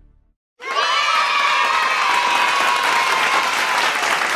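Crowd cheering and shouting, cutting in suddenly about half a second in after the tail of music fades to a brief silence. One long yell stands out above the crowd, slowly dropping in pitch.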